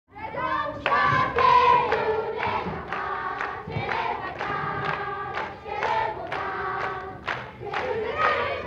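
A group of children singing together, with hand claps keeping a beat of about two a second.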